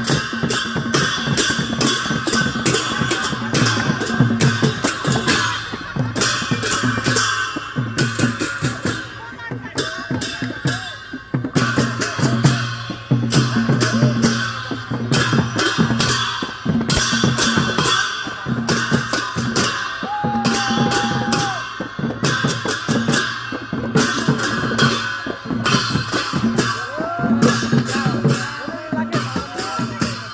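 Newar dhimay drums beaten with sticks and palms in a fast, unbroken rhythm, with clashing hand cymbals ringing over them. Voices shout now and then, and a short high held note sounds about two-thirds of the way through.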